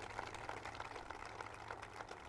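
Faint scattered applause from an audience, many quick irregular claps over a steady low hum.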